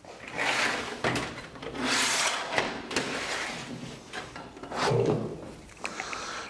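A steel scribe scraping along a flat sheet-metal blank in several slow strokes, scratching a layout line one inch in from the edge, with a few light metallic clicks between strokes.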